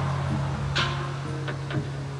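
Archtop guitar played softly: low notes ring on and slowly fade while a few single higher notes are plucked over them.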